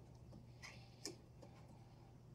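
Near silence with two faint clicks of a screwdriver on a terminal screw in a mini-split air conditioner's terminal block, about two-thirds of a second and one second in.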